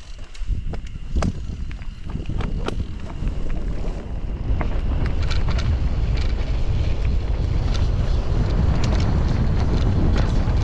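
Wind rushing over the camera microphone as a mountain bike rolls down a dirt trail, getting louder as it picks up speed, with the frame and tyres rattling and knocking over bumps in the dirt.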